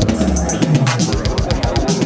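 Synthesized General MIDI drum and instrument sounds from the Expert Sleepers General CV module, retriggered into a fast, even stream of hits over a low tone that falls in pitch.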